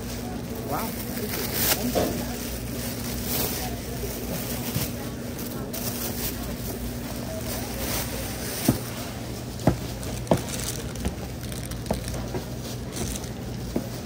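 Grocery store ambience: a steady low hum with indistinct voices in the background. Three sharp knocks come a little after the middle, the loudest sounds here.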